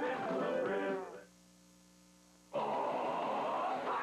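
A TV commercial's sung jingle ends and fades out about a second in. Then comes a short gap of faint, steady mains hum between commercials, and the next commercial's soundtrack cuts in suddenly and loud past the halfway point.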